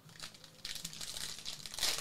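Foil wrapper of a Panini Prizm football card pack crinkling as it is handled, then being torn open near the end, the tear the loudest part.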